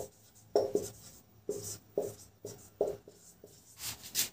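Marker pen writing on a whiteboard: a series of short strokes, about two a second.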